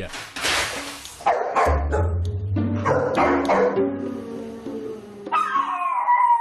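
Dog barking repeatedly over background music, after a short burst of noise near the start; near the end a high, wavering, falling howl begins.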